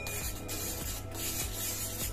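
A metal spoon stirring and scraping a wet beetroot paste around a small stainless steel bowl: a continuous rubbing rasp. Background music plays underneath.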